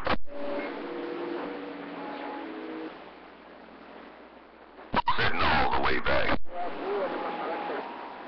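CB radio receiver hissing with static between transmissions, with a few faint steady tones in the first few seconds. About five seconds in, another station's voice breaks through for about a second and a half, starting and stopping abruptly, before the hiss returns.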